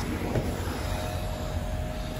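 Steady low rumble of outdoor background noise, with wind and handling noise on a handheld microphone, and a faint steady tone joining about a second in.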